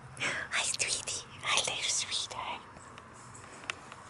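A person whispering softly in a few short, breathy bursts over the first two and a half seconds.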